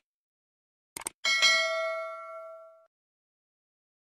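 Subscribe-button animation sound effects: a quick double mouse click about a second in, then a bright notification-bell ding that rings and fades away over about a second and a half.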